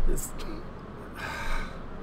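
A man sighing: a short, sharp intake of breath, then a long breathy exhale a little over a second in.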